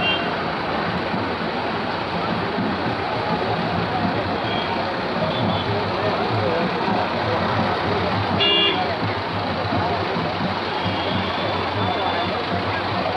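Vehicle engine running steadily under a crowd's chatter, with a short horn toot about two-thirds of the way through and a few faint high beeps.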